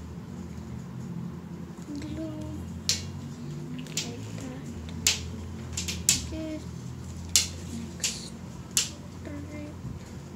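A series of about eight sharp, irregular clicks over a steady low background hum.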